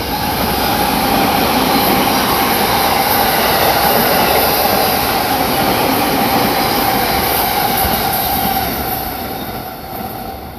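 A Yokosuka Line electric commuter train running through the station without stopping. The noise of its wheels on the rails swells quickly, holds, then fades over the last second or so, with a steady whine running through it.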